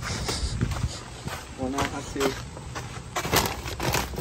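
Clothes and a plastic shopping bag rustling and crinkling as they are handled, in a run of short, irregular crackles with one sharper crinkle near the end.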